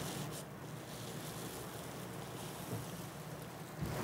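Low steady background hiss of room tone, with no distinct sound standing out.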